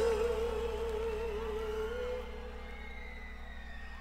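Live pop concert recording played back from a vinyl record: a long held note with a slow vibrato over steady low sustained chords, fading away about halfway through.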